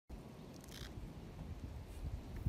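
Faint low rumble of wind buffeting the microphone outdoors, with a brief faint high sound just under a second in.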